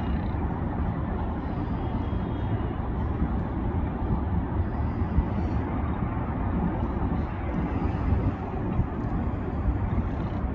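Steady rumbling background noise, heaviest in the low end, with no distinct events.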